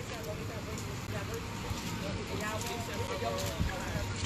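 Faint, indistinct voices of people talking at a distance over a steady low background noise.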